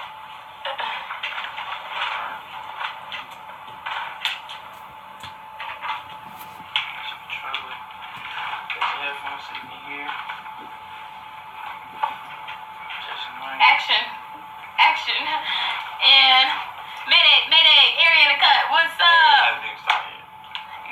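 Indistinct voices over a steady hiss with scattered small clicks, then loud, animated, unintelligible voices in the last six seconds.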